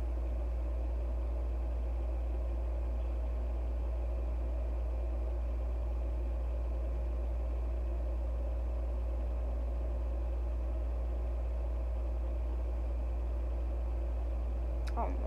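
A steady, unchanging low hum with a few fainter steady tones above it: constant background noise of a room or the recording, with no other sound standing out.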